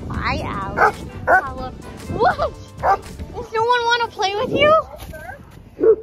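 Dogs barking and yipping in play: a string of short barks about every half second, then one long wavering howl-like cry, and a last bark near the end.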